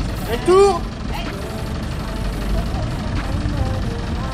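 Diesel engine of a telehandler running steadily with a low rumble, holding its raised boom. About half a second in, a brief voice call rises above it.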